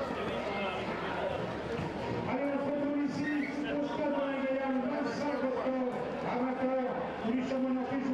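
Football stadium crowd noise with voices. From about two seconds in, a long drawn-out chant is held on a steady note for several seconds.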